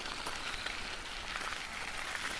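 Faint, steady hiss of background ambience, like light rain, with no distinct events.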